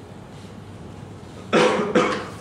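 A person coughing twice in quick succession about one and a half seconds in, the loudest sound. Before it there is only a faint steady hum.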